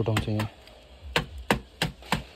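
A wooden float tapping on freshly laid wet concrete in a foundation pit: sharp taps, about three a second, starting about a second in.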